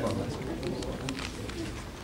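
Speech: a low voice talking in a hall over a steady low hum, with a few faint clicks.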